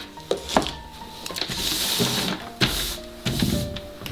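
Soft background music with held notes, over handling of art supplies: a few light knocks in the first second and near the end, and the rustle of a paper towel being picked up in the middle.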